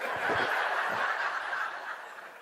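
An audience laughing together, a broad wash of many people's laughter that fades away near the end.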